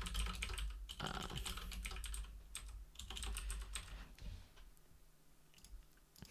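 Typing on a computer keyboard: a run of quick, fairly faint key clicks that thins out and stops about four and a half seconds in.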